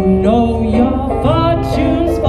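Live blues song coming through the stage PA: a sung melody over instrumental accompaniment, with sustained low notes underneath.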